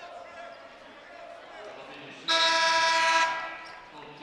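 Basketball arena horn sounding one steady, loud blast about a second long, a little past halfway through, over quiet gym ambience while play is stopped.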